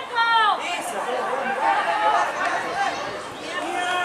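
Several men's voices shouting and calling out over one another during a football match; a loud shout with a falling pitch opens it.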